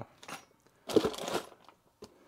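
Plastic parts bags crinkling and shifting inside a cardboard kit box as they are handled, in one short burst about a second in.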